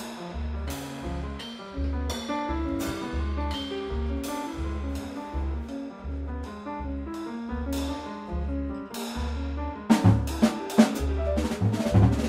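Live jazz piano trio playing: acoustic piano over steady, evenly paced double-bass notes, with the drummer keeping time on a cymbal. About ten seconds in, the drums break in with loud hits.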